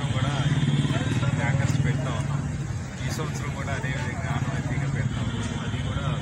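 An engine running steadily with a low, fast-pulsing hum, under people talking.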